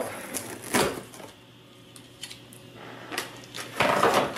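Scissors slitting packing tape along the seam of a cardboard box: a sharp swish about three-quarters of a second in, a few faint clicks, then another sharp rustle of tape and cardboard just before the end.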